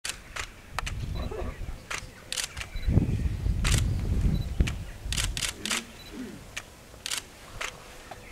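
Camera shutters clicking about fourteen times at irregular intervals, some clicks with a short high beep beside them, over a low rumble that is loudest from about three to five seconds in.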